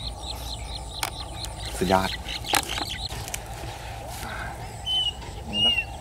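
Outdoor ambience with a bird chirping, short high calls repeated about four a second, and a couple of sharp clicks. A single spoken word comes about two seconds in.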